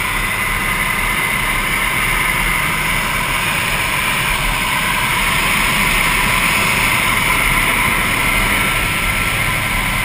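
Steady engine and rushing-wind noise inside a small skydiving plane's cabin in flight, with the jump door open. It is loud and unbroken and swells slightly in the middle.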